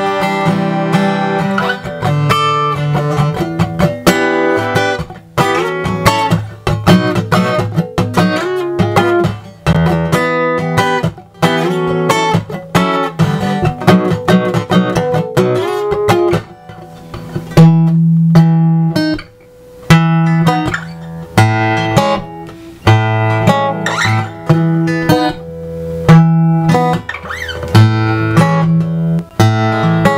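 Taylor 810ce acoustic guitar strummed through a Fishman Aura Spectrum acoustic imaging pedal set to a dreadnought image, with just a little of the guitar's own pickup blended in. Steady strumming turns to separate chord strokes with short gaps in the second half.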